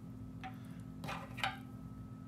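A few small ticks and clicks from hands working thread and a jig clamped in a rotary tying vise: a light click about half a second in, then two sharper ticks close together near the middle, the second the loudest, over a steady low hum.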